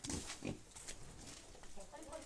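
Pigs grunting: a couple of short grunts in the first half-second, then fainter scattered grunts.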